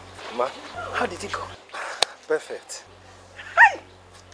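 A woman laughing in short, broken spurts, ending about three and a half seconds in with a loud, high cry of laughter that falls in pitch.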